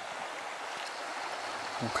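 Shallow creek running over a stone and shale bed, a steady even hiss of flowing water.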